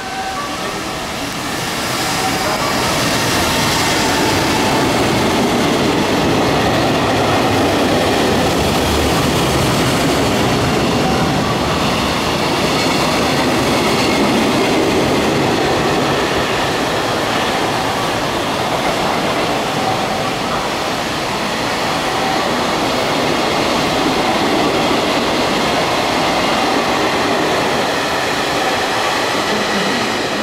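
EF210 electric locomotive hauling a long container freight train passing at speed: a loud, steady rumble and rattle of wagon wheels on the rails. It swells about two seconds in and holds until near the end.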